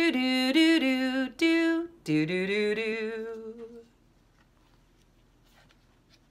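A woman singing a wordless tune on 'do' syllables: a run of short notes, then one long note that fades out about four seconds in.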